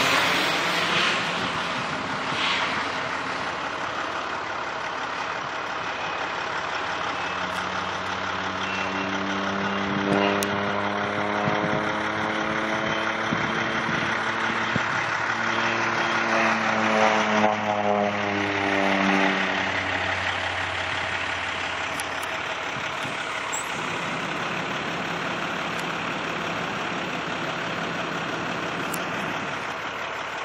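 Air Tractor 502 crop-duster's turboprop engine and propeller droning through low spray passes. The drone fades as the plane pulls away after passing overhead at the start, swells again, and drops in pitch as it goes by a second time around two-thirds of the way in.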